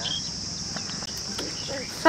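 Crickets chirring in a steady, high-pitched drone.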